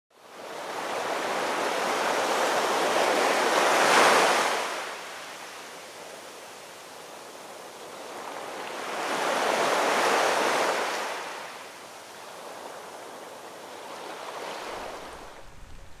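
Ocean waves washing in: two surges of surf swell up and die away about six seconds apart, the louder first one about four seconds in, then a softer steady wash.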